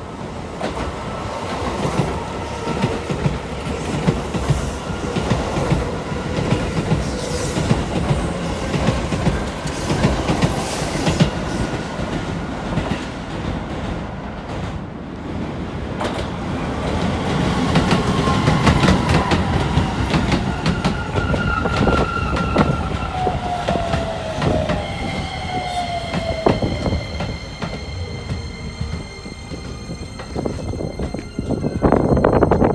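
Electric commuter trains of the Keisei Main Line at a station, with wheels clattering over rail joints. From about halfway, a train runs in alongside the platform with a whine that falls steadily in pitch as it slows. Near the end it gives a steady high-pitched hum.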